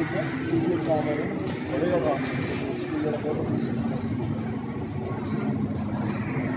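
Men talking in conversation, the words indistinct, over a low background hum.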